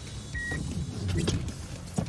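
Low rumble and rustling of someone shifting and straining in a car seat, with one short high beep about half a second in.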